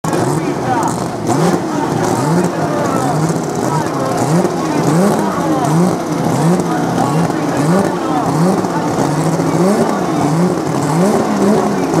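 Drag-racing car engines at the start line, revved over and over in throttle blips that rise and fall roughly once a second.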